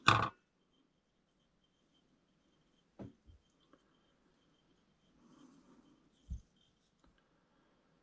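Faint handling sounds at a fly-tying vise: a short rush of noise right at the start, a sharp click about three seconds in, soft rustling a little past five seconds, and a dull low thump just after six seconds, with a faint steady high whine underneath.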